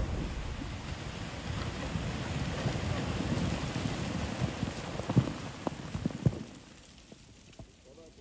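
Water and broken ice thrown up by an explosive charge in river ice raining back down onto the ice and snow, a steady patter that follows the fading rumble of the blast and dies away after about six and a half seconds. A few louder thuds of larger chunks landing come near the end.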